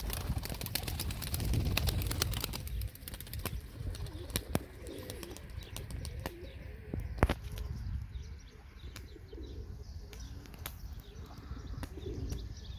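Domestic pigeon's wings flapping as it flies up and circles overhead, loudest in the first few seconds, with scattered sharp clicks throughout. Faint cooing of pigeons can be heard underneath.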